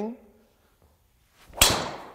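Driver clubhead striking a teed golf ball: a single sharp crack about one and a half seconds in, after a brief swish of the swing, with a short fading tail. The ball is struck in the centre of the club face.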